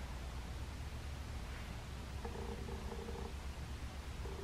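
A low, steady rumble, with a faint, brief tone a little past the middle.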